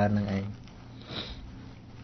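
A man's voice finishing a spoken phrase, then a short sniff through the nose about a second in, in a small room.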